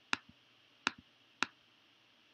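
Three sharp, separate computer mouse clicks over about a second and a half, each one toggling a pixel on a light-matrix grid in the app, with a couple of fainter ticks between them.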